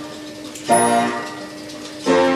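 Imhof & Mukle 'Lucia' orchestrion playing a quiet moment in its tune: one held note, then a chord about two-thirds of a second in that sets in sharply and fades away.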